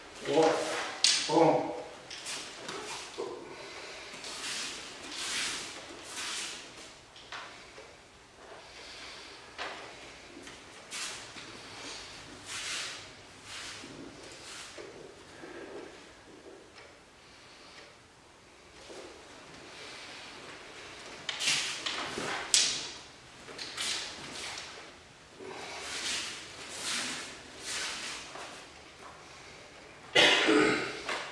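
A series of short swishes and rustles from a person performing an iaido sword kata: the cloth of the gi and hakama, bare feet moving on the mats and the sword being handled. They come in clusters in the first several seconds and again in the last third, with a quieter stretch in the middle.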